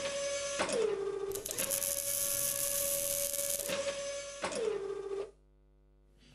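Machine-like whirring sound effect of robot arm servos: a steady whine that dips in pitch twice, once about a second in and again near the end, with a dense mechanical hiss in the middle. It cuts off suddenly about five seconds in.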